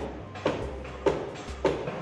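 Soft background music, with a few short clinks and scrapes of a ladle stirring dal and chayote in a pressure cooker.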